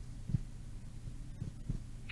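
Low steady hum on a voice-call line, with a few soft low thumps.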